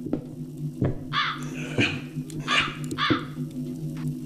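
A crow cawing four times in quick succession, over footsteps on a wooden floor and a steady low hum.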